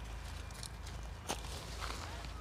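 Faint footsteps and rustling, with one sharper click about halfway through.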